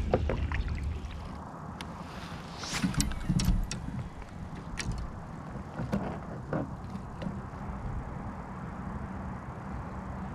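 Scattered clicks and knocks of gear being handled in a fishing kayak, over a steady low rumble. The knocks are thickest a couple of seconds in and again near the middle.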